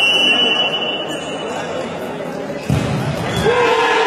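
Echoing indoor sports-hall ambience with voices. A steady high tone sounds in the first second and a half, and a heavy low thump comes near the three-second mark.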